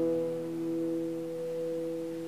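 The final strummed chord of an acoustic guitar ringing out: a few steady notes hanging on and slowly fading.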